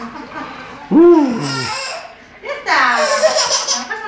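A baby squealing and laughing: a short rising-and-falling squeal about a second in, then a longer, louder laughing squeal from about two and a half seconds in.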